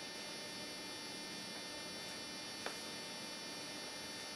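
Steady electrical hum with a faint hiss: room tone in a classroom, with one faint click about two and a half seconds in.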